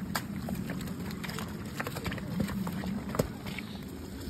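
Ponies' hooves clopping irregularly on a wet, rocky track at a walk, heard from the saddle, with a steady low rumble underneath.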